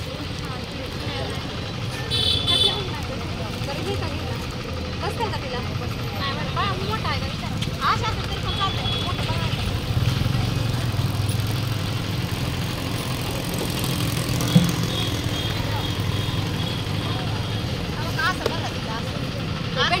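Street traffic: a steady low engine drone, with a short horn toot about two seconds in and voices in the background.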